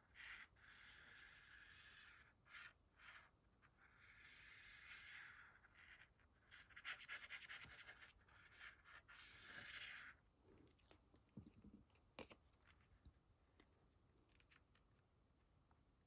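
Faint scratching of a glue bottle's fine applicator tip drawn across cardstock as glue is laid down in lines, in several strokes over the first ten seconds or so. After that come a few faint taps and paper handling.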